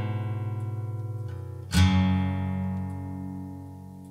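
Guitar music from the song's soundtrack. A chord rings and fades, then a new chord is struck about two seconds in and rings out slowly, dying away.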